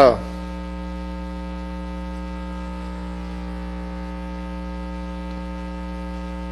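Steady electrical mains hum on an open microphone feed: a low, unchanging buzz made of a ladder of evenly spaced tones.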